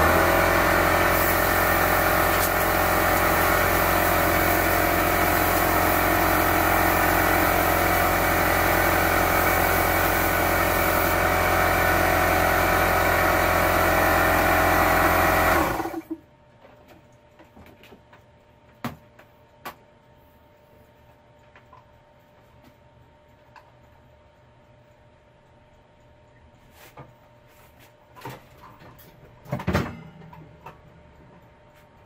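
Compressed air rushing from a blow gun over the steady hum of a running motor, blowing powder-coat powder off a workbench. It starts abruptly and cuts off suddenly about sixteen seconds in.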